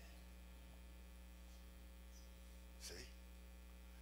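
Near silence with a steady low electrical mains hum from the sound system; one short spoken word near the end.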